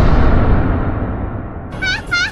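Outro sound effects: a deep booming rumble fades away, then near the end a rapid string of high squeaky calls starts, about three a second.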